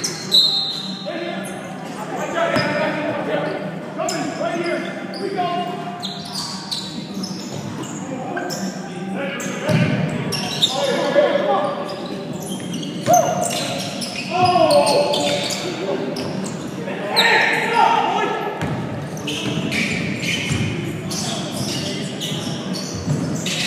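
Basketball game in an echoing gym: a ball bouncing on the hardwood floor, with players' voices calling out across the court.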